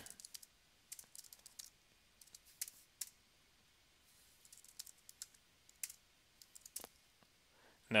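Faint keystrokes on a computer keyboard, typed in short irregular runs with pauses between them.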